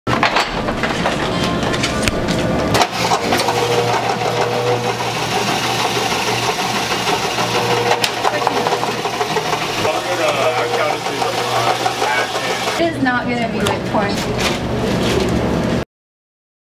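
Electric shave ice machine running: a steady motor hum with the scraping of the blade shaving a block of ice, amid people talking.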